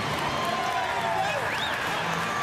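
Ballpark crowd clapping and cheering a home run, a steady wash of applause with scattered shouting voices.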